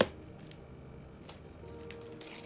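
One sharp tap of fingers against a black plastic plant pot, then faint background music with a soft held note near the end.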